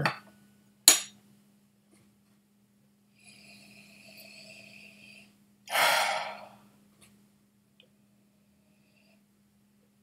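A spoon clinks once against a whisky glass about a second in. A few seconds later comes a faint, drawn-in breath as the watered whisky is sipped, then a loud breathy exhale.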